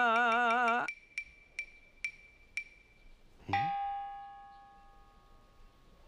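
A man singing a held, wavering note of a folk-style tune, breaking off about a second in. Then four quick light ticks with a high ring, and about three and a half seconds in a single bell-like struck tone that rings and fades.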